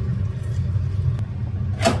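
Steady low kitchen hum, with a faint click about a second in and one sharp knock near the end.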